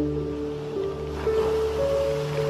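Slow ambient music of long held notes over a low drone, with a soft wash of ocean waves that swells about a second in.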